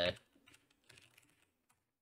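Faint computer keyboard typing: a quick run of separate keystrokes that stops shortly before the end.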